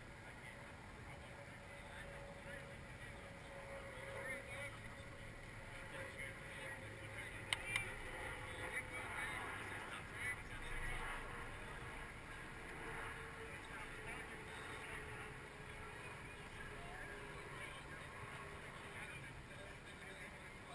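Jet aircraft passing overhead, heard faintly as a long hum whose pitch slowly falls over many seconds. Faint distant voices, and one sharp click about seven and a half seconds in.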